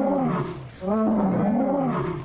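Two deep, drawn-out calls from a computer-animated Torosaurus, each about a second long and rising then falling in pitch, voiced for the wounded old male beaten in a rutting fight.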